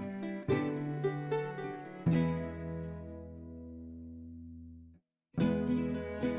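Background instrumental music of plucked chords, each struck and left to ring. One chord fades out, the sound cuts to silence for a moment about five seconds in, and then the music starts over.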